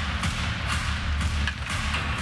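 Ice hockey arena background sound: a steady low rumble under an even crowd-like haze, with no clear single impact standing out.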